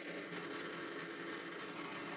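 Drill press running with a steady, fairly quiet hum while its bit drills through a wooden dowel block.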